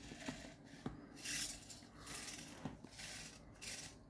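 Small hobby servo motors in an animatronic skeleton raven whirring in several short bursts as they move its head, with a few light clicks between them.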